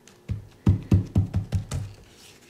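A dauber-top bottle of Distress Paint dabbed repeatedly onto glossy photo paper: about eight quick, dull taps, about five a second, starting a little way in and stopping near the end.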